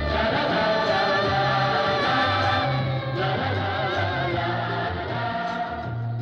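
A Hindi film song playing: several voices singing long, wavering held notes together over a pulsing bass line.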